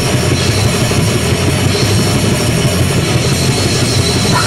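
Grindcore played at full volume with no vocals: a dense wall of heavily distorted guitar and bass over rapid, unbroken drumming.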